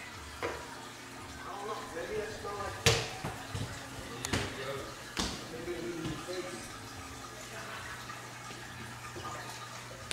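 An infant babbling softly, in short bits, while several sharp knocks sound on a hard floor. The loudest knock comes about three seconds in and the others are spread over the next couple of seconds. A low steady hum runs underneath.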